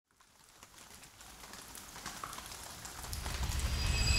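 Rain fading in from silence and growing steadily louder, with a low rumble building in the last second.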